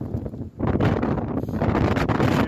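Strong gusting wind, maybe 50–60 miles an hour, blowing straight onto the microphone as a loud rumbling buffet. It eases briefly about half a second in, then picks up again.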